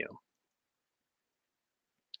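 Near silence, after the last syllable of a spoken word dies away at the very start.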